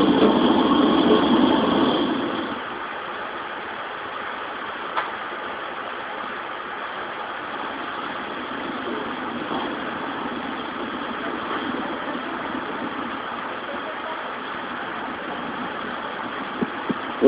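Live ambient street noise from a protest clash with riot police, recorded off a television: an even din like traffic or an engine running. It is louder for the first two seconds, then settles to a steady lower level, with one sharp click about five seconds in.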